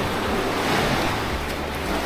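Steady rushing noise of sea waves and wind.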